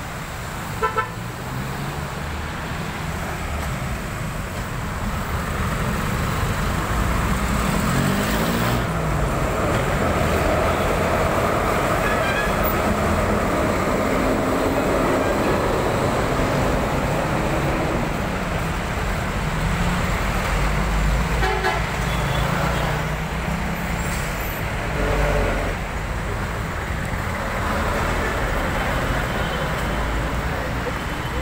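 Street traffic with cars passing and engines running steadily, broken by short car-horn toots: two quick ones about a second in, and more later on.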